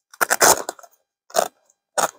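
Fabric of a tent's duffle carry bag rustling and scraping under a hand, in two short bursts, the second briefer.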